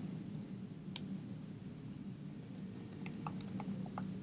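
Computer keyboard being typed on: a single keystroke about a second in, then a quick run of keystrokes in the last second and a half, over a steady low hum.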